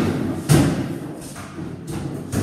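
A sharp thump about half a second in, then fainter knocks.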